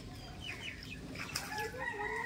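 A domestic chicken clucking, with its calls growing stronger about one and a half seconds in, over the faint clicks and drips of a wet cast net being hauled out of a pond.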